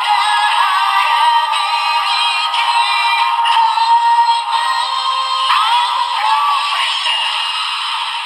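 Bandai DX Kamen Rider Revice transformation toy with the Perfect Wing Vistamp inserted, playing an electronic song with synthesized singing through its small built-in speaker; the sound is thin and tinny, with no bass.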